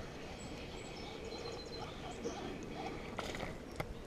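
Quiet outdoor ambience with a few faint, high bird chirps, and two sharp clicks near the end.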